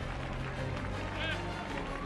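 Church music of low held chords with a congregation's voices under it, and one short call from the crowd about a second in.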